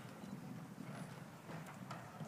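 Quiet hall noise in a pause between pieces: a low murmur of rustling with a few scattered light knocks, such as players shifting and handling their instruments and chairs.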